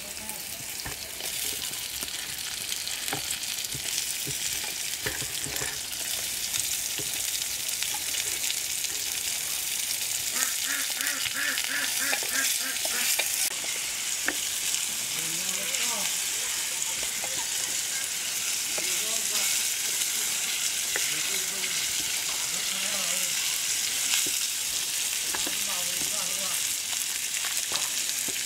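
Prawns and sliced onions frying in hot oil in an aluminium pot, with a steady sizzle, and a spatula scraping and clicking against the pot as they are stirred.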